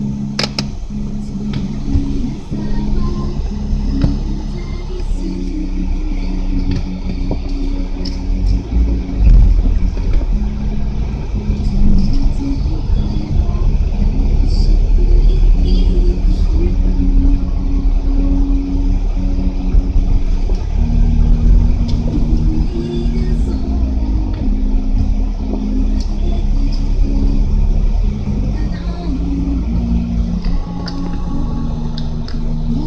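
Low engine and road rumble inside a moving Mitsubishi Lancer, recorded by its dashcam, with music playing over it.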